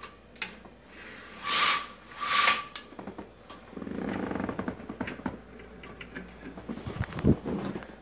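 Horizontal window blinds being pulled shut by their cord: two quick scraping pulls of the cord about one and a half and two and a half seconds in, then the slats rattle for a second or so. A few sharp knocks come near the end.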